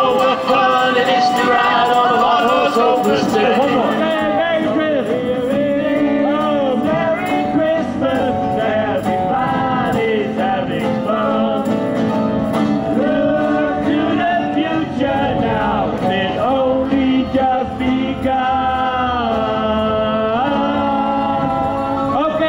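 A live band playing a Christmas song, with several voices singing over keyboard and guitar.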